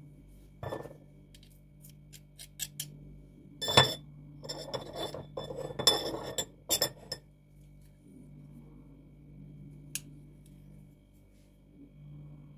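Metal garlic press and utensils clicking and clinking against a ceramic bowl and saucer as garlic is pressed and scraped into a marinade. There is a sharp knock about four seconds in, then a few seconds of scraping and clinking, and one last click near ten seconds.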